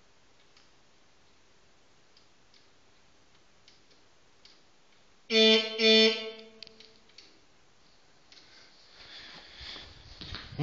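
Two loud, short electric horn beeps from a homemade e-bike, a little over five seconds in, with a few faint clicks before and after.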